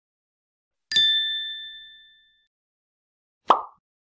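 Logo-animation sound effects: a bright bell-like ding about a second in that rings out over about a second and a half. A short burst of noise follows near the end.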